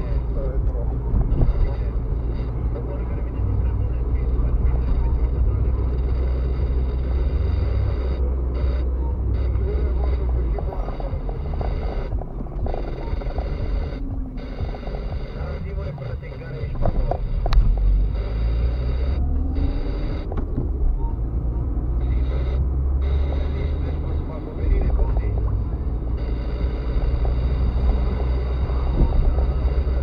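Car cabin noise heard from inside a moving car: a steady low engine and road rumble that eases off around the middle and builds again as the car picks up speed.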